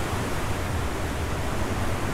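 Torrential rain falling steadily: an even, unbroken rushing noise, heaviest in the low end.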